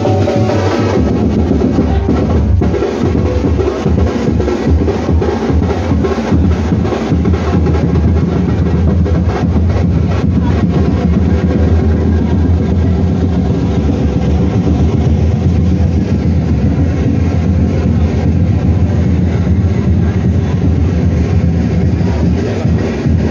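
Dhol drums beaten loudly in a fast, dense rhythm, with heavy booming low strokes.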